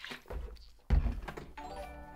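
Swallowing from a plastic shaker bottle, then a heavy thump about a second in as the bottle is set down on the desk. After that a livestream donation-alert jingle of held tones starts up.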